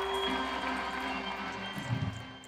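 Live rock band playing on stage, heard from the audience through the hall's sound system, with long held notes.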